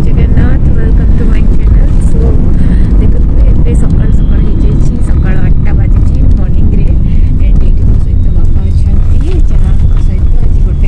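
Steady low rumble of a moving car heard from inside the rear cabin, with faint voices over it.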